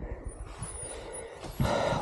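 Low, irregular wind rumble and rustling of clothing and bracken against the action camera's microphone as the rider moves about on the ground after a crash, with a louder rustling rush near the end.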